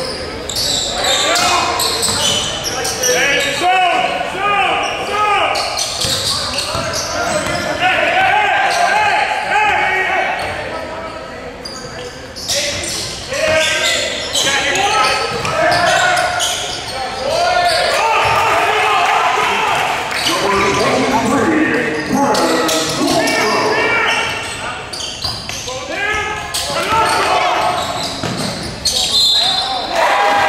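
Basketball being dribbled on a hardwood gym floor during play, the bounces echoing in a large hall, mixed with indistinct shouts and chatter from players and spectators.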